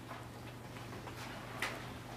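Stylus tapping and scratching on a tablet screen while handwriting, heard as a few faint, sharp ticks over a steady low hum.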